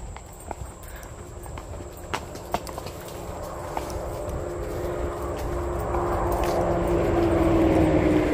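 Horses walking on a dirt trail, with a few scattered hoof clops. Through the second half a motor vehicle on a nearby road grows steadily louder as it approaches.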